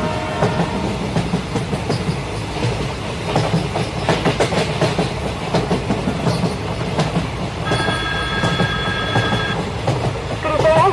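Train running: a steady rumble with continuous clickety-clack of wheels over rail joints. A horn, a steady chord of several tones, cuts off just after the start and sounds again for about two seconds near the end.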